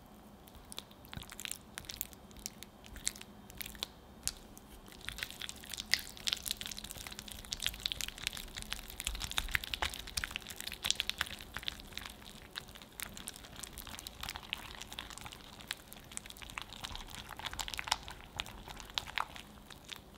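A whisk beats softened cream cheese in a glass bowl, with wet squishing and the wires clicking against the glass. The strokes are sparse and irregular at first, then turn fast and continuous from about five seconds in until just before the end.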